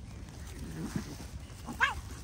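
A cat lets out one short, sharp cry that rises in pitch, near the end, during a scuffle between two cats.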